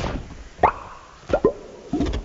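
Live electronic sounds played with handheld cabled controllers: short blips that sweep quickly down in pitch. A strong one comes about two thirds of a second in, then two in quick succession near a second and a half.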